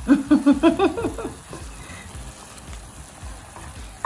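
A woman laughs briefly at the start. Then spinach and its water sizzle quietly in a skillet on low heat while a silicone spatula stirs it.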